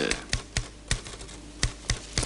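Typewriter keys struck slowly and unevenly, single sharp clacks at about three a second.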